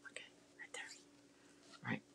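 A woman whispering faintly under her breath: a few short, quiet sounds with pauses between.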